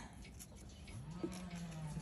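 Faint rustle of journal pages being turned by hand. About a second in, a low drawn-out hum starts, rises briefly and then holds steady.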